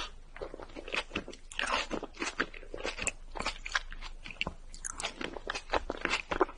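Close-miked chewing of a grape-filled mochi rice cake: wet, irregular mouth clicks and smacks, several a second, with some crunch.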